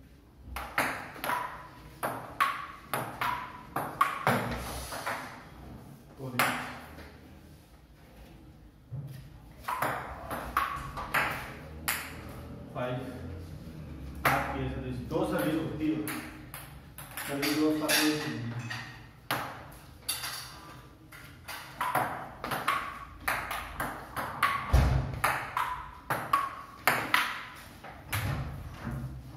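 Table tennis rallies: the ball clicking back and forth off the table and the paddles in quick runs of hits, with short pauses between points.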